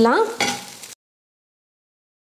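A brief scraping of a spatula stirring crumbled idli in a pan, cut off about a second in by dead silence.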